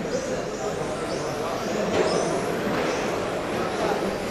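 Electric brushless 13.5-turn RC touring cars running on a carpet track, their motors whining in high-pitched glides that rise and fall as they accelerate and brake, over a steady wash of hall noise.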